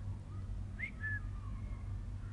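African grey parrot whistling: a short rising note a little under a second in, followed at once by a short level note.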